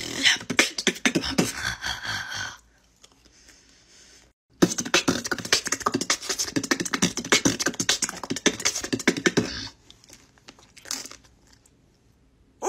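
A woman beatboxing with quick mouth clicks, pops and hisses, in two runs: one stops about two and a half seconds in, and the other runs from about four and a half to ten seconds in. The second run imitates biting into an ice cream cone and ends on a beatboxed crunch.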